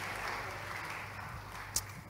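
Faint applause from a congregation, tapering off, with one sharp click near the end.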